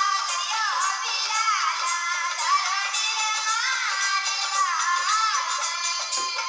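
A very high-pitched, sped-up-sounding voice singing a Rajasthani bhajan melody without pause, its notes gliding up and down. It is a male singer imitating a female folk singer's voice.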